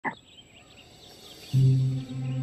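Quiet cartoon swamp ambience with faint high chirps, opened by a very short falling swoosh. About a second and a half in, a loud, low, held note of background music comes in.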